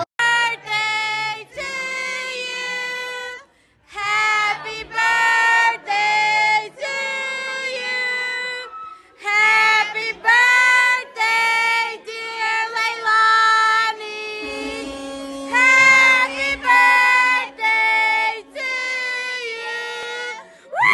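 A high voice singing a melody in held, steady notes, phrase after phrase with short breaks between. A lower held note sounds under it for a few seconds past the middle.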